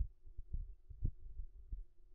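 Four or five muffled low thumps at irregular intervals over a faint steady hum.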